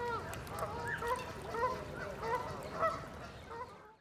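Waterfowl on open water calling: a run of short calls that rise and fall in pitch, about two a second. The sound cuts off just before the end.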